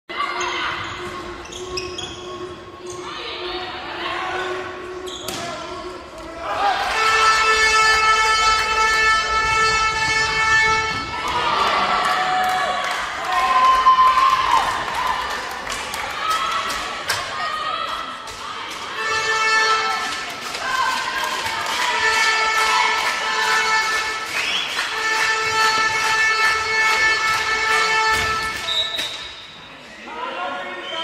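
Indoor handball game in a large, echoing sports hall: the ball bouncing on the court and voices, with a horn sounding in long, steady blasts of several seconds each. The first blast starts about a quarter of the way in, and more follow in the second half.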